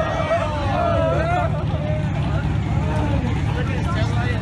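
Car engines running at low revs with a steady exhaust rumble as cars pull slowly out, under a crowd of many voices talking and calling out.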